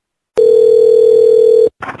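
Telephone ringback tone over the phone line: one loud, steady ring tone lasting just over a second, cutting off suddenly as the called payphone is picked up.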